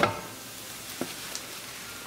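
Okra and taro root stir-fry still sizzling in a hot frying pan just off the gas while a wooden spatula pushes it out into a steel serving bowl, with a light knock about a second in.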